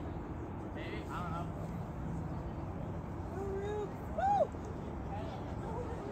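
Steady outdoor background hiss with a few faint, distant voices calling out, the loudest a short call about four seconds in.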